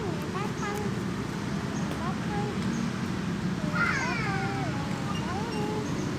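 Faint talking over steady outdoor background noise, with a brief high-pitched voice about four seconds in.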